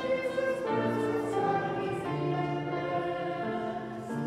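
Slow choral music with long held chords that change about every second.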